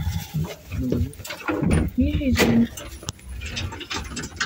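Indistinct talking from a few people inside a lift car, with a short rising-and-falling vocal sound about two seconds in.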